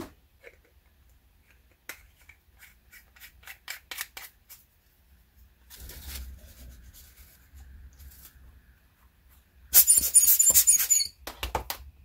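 Optical lens tissue rustling and crinkling as a telescope finder-scope tube is wiped by hand. A run of light ticks comes a couple of seconds in, and a loud crackling burst of crumpled tissue comes near the end.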